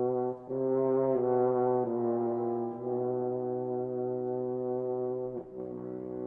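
Solo French horn playing a slow phrase over an orchestra: a few short sustained notes, then one long held note that breaks off shortly before the end, followed by a new note.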